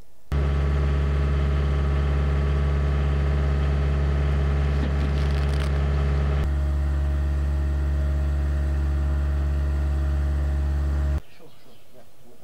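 An engine running steadily at an even speed, a loud low hum. It cuts in and out abruptly, with a click and a slight change of tone about six and a half seconds in.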